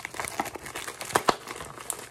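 Plastic poly mailer crinkling as it is tugged at its taped-shut top to get it open, with two sharp crackles a little over a second in.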